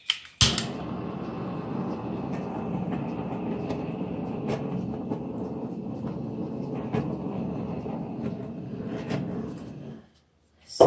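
Handheld electric blower switched on with a click about half a second in, running at a steady pitch with a faint high motor whine, then cut off abruptly at the end.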